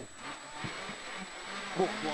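Engine of a 2.0-litre Mk2 Ford Escort rally car running at speed, heard from inside the cabin as an even drone under faint road noise. A short "Oh" from the crew comes near the end.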